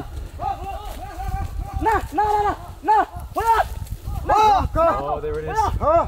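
People running through dry bush: uneven footfalls and a jostling rumble. Over them come quick runs of short, pitched voice calls, each rising and falling.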